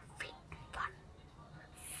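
Soft whispering: a few faint, short syllables in the first second.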